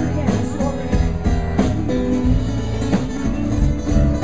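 Live band playing an instrumental passage of a blues-rock song: acoustic guitar picking single notes over a steady beat.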